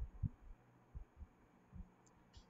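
A few soft low thumps, irregularly spaced, over faint hiss; the loudest come just at the start.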